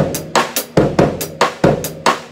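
Drum kit playing a linear eighth-note groove grouped three plus five: single strokes that pass between hi-hat, cross-stick on the snare rim and bass drum, never two at once. The strokes come at an even pace of about five a second and stop at the very end.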